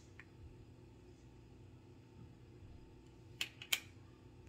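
Quiet room tone with a faint steady low hum; near the end, three quick clicks of handling noise.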